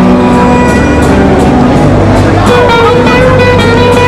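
Live country band music with guitar, loud and close to overloading the recording. A long held note comes in about halfway.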